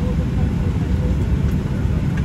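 Airliner cabin noise while the plane taxis: a steady low rumble from the engines.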